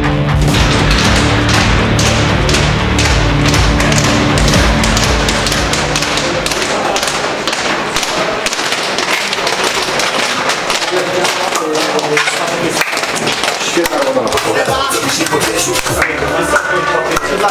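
Background music, its bass dropping away about six seconds in, over many quick taps of studded football boots on a tiled corridor floor and the voices of players walking through.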